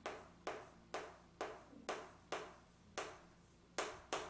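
Chalk writing on a chalkboard: a run of about eight short tapping strokes, roughly two a second, as letters are written.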